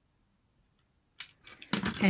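Near silence, broken about a second in by a single sharp click; a woman starts speaking just before the end.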